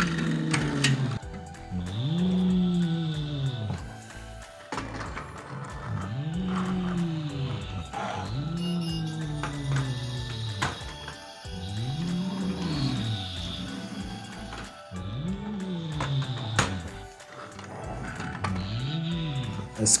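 A man's voice making toy-engine noises for pushed Duplo construction vehicles: a repeated 'vroom' that rises and falls in pitch, about every two seconds. Occasional light clicks of plastic toy parts come between them.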